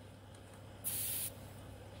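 A brief hiss of air, about half a second long and about a second in, escaping from a car tyre's valve as a screw-on TPMS sensor cap is spun onto the valve stem and presses the valve open before it seals.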